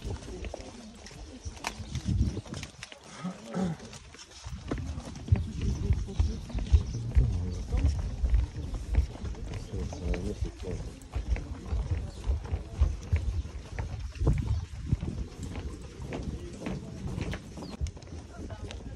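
Wind buffeting a phone's microphone outdoors: a gusty low rumble that swells and fades throughout, with scattered footsteps and faint distant voices underneath.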